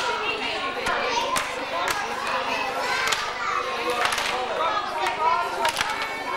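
Lively chatter of many children's voices and other people talking, with frequent short sharp knocks and clacks mixed in.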